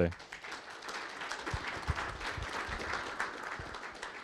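Audience applauding: many hands clapping in a steady patter that tapers off near the end.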